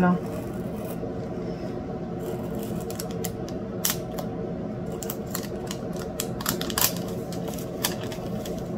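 Small pointed craft cutter scoring a diamond painting's plastic cover sheet along washi tape: scattered sharp ticks and scratches, more frequent in the second half, over a steady low hum.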